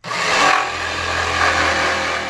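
Corded jigsaw running at speed, its blade cutting through clamped pine boards. It starts abruptly and holds steady and loud.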